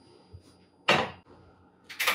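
A stainless saucepan set down on a gas stove's grate: one sharp metallic clunk about a second in, with a faint click before it and a couple of clicks near the end as the burner knob is turned.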